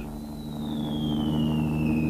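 Whistle of a falling bomb, one long tone gliding steadily down in pitch, over a low steady drone that slowly grows louder.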